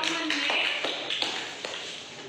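A few scattered hand claps, sharp and separate at a few a second, thinning out and fading away, with a voice faintly under them.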